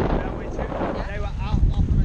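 Wind buffeting the camera microphone in a steady low rumble while the raft drifts, with a brief voice sound about a second in.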